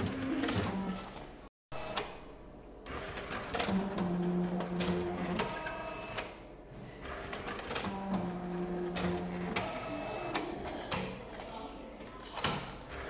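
Bank statement printer at work: clicking and clattering mechanism, with two steady motor hums of about a second and a half each, one about four seconds in and one about eight seconds in.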